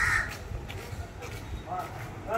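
A crow caws once, loud and harsh, right at the start, over a low steady rumble.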